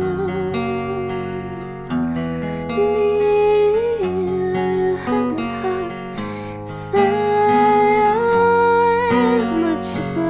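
Music: a woman's voice singing long, held notes with vibrato over plucked acoustic guitar.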